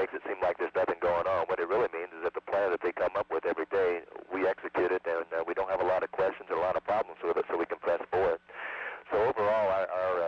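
A man speaking continuously over a narrow-band space-to-ground radio link, with a steady low hum beneath the voice.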